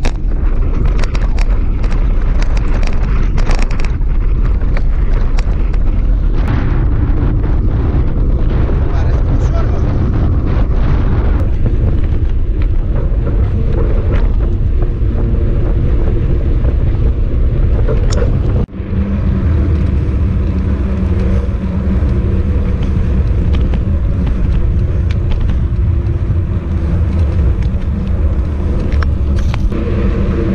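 Wind buffeting the microphone of an action camera clamped to a bicycle handlebar while riding, a loud, steady low rumble. Over the first half, knocks and rattles come through as the bike jolts across a cracked, potholed road. About two thirds of the way in there is an abrupt cut to smoother pavement, where the wind rumble runs on with fewer knocks.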